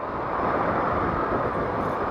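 Steady running noise of a Yamaha FZ6 Fazer's 600 cc inline-four in slow city traffic, blended with wind and road noise on the camera's microphone.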